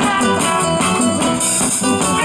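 Live band playing an instrumental passage, with electric guitar, bass guitar and drum kit.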